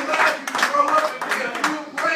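Church congregation clapping their hands in a loose, uneven patter while a man's voice calls out over it. The clapping thins out in the second half.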